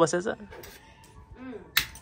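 One sharp crack near the end as a walnut is struck against a concrete doorstep with a hard object, breaking its shell.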